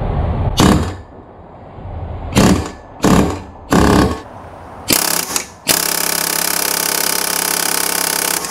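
Pneumatic air hammer driving a KC Tools Shock-It adapter socket against an oxygen sensor: a few short bursts of hammering, then a steady run of rapid blows over the last couple of seconds. The sensor does not come loose.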